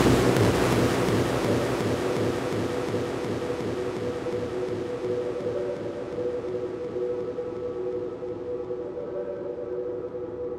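Breakdown in an electronic dance track: the beat drops out and a wide synth noise wash fades slowly, its bright top end filtering down, over held synth pad notes.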